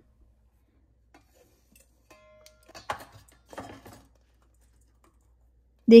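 Mostly quiet, with a few soft scrapes and taps about halfway through as coarse-ground falafel mixture is emptied from a plastic food-processor jar into a stainless steel bowl.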